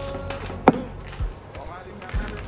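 A sharp knock about two-thirds of a second in and a softer thump a little later, from groceries being handled in and out of a cardboard box.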